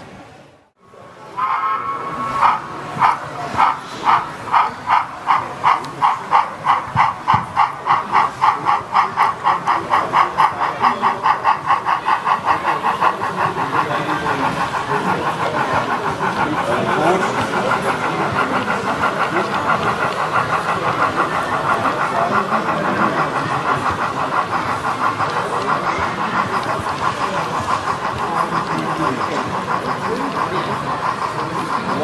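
An HO-scale model steam locomotive's sound decoder is playing exhaust chuffs through its small speaker. The chuffs start at about two a second and quicken until they run together into a steady hiss, which fits the engine gathering speed.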